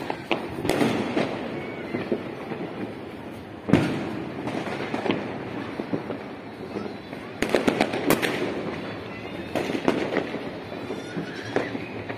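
Firecrackers and fireworks going off across the city: scattered sharp bangs and pops, the loudest about four seconds in and a quick run of them around eight seconds, over a steady background din.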